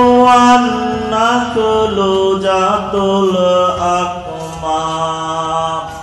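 A solo voice chanting a slow melody in long held notes, stepping down in pitch and fading near the end.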